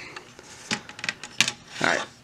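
Light plastic clicks and rattles from handling a laptop's bottom casing and its ribbon cable connector, with two sharp clicks less than a second apart.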